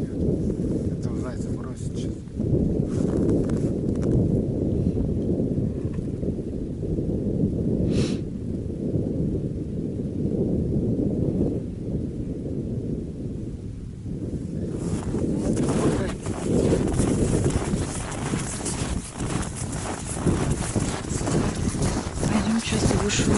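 Wind buffeting the camera microphone in a steady low rumble. In the last several seconds it is joined by footsteps crunching in snow.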